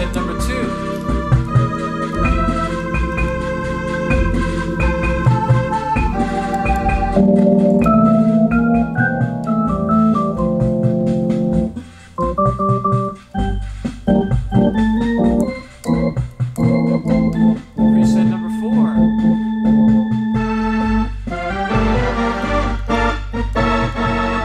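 Hammond Colonnade electronic theater organ played on two manuals, melody and chords over its built-in automatic rhythm accompaniment, with a few brief breaks in the playing about halfway through.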